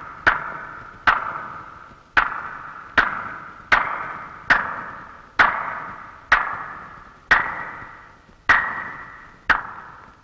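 Slow, single hand claps, each with a long echoing tail, about one a second and spacing out slightly toward the end.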